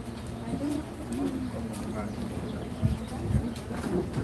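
Low, indistinct voices murmuring close by, with two dull thumps about three seconds in.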